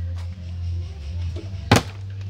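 A small plastic water bottle, flipped, lands on a wooden tabletop with one sharp knock near the end and tips over onto its side instead of standing upright: a missed bottle flip.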